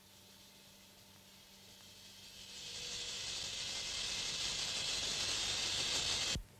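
A hissing, rushing noise that swells steadily from faint to loud over several seconds.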